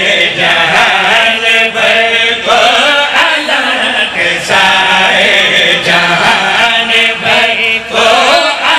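Several men chanting a devotional verse together into microphones, loud and amplified through a PA, with the voices held in long sung lines.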